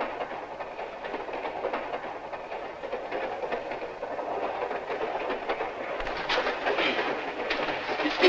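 Passenger train running along the track: a steady rumble with the clickety-clack of the carriage wheels over the rail joints, with a few sharper clicks about six to seven seconds in.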